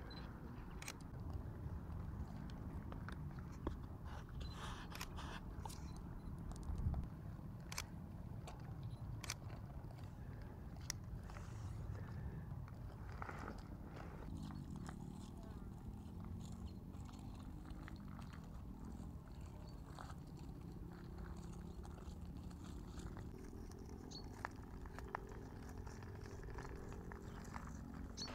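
Faint outdoor ambience: a steady low rumble, scattered light ticks, and faint distant voices in the second half.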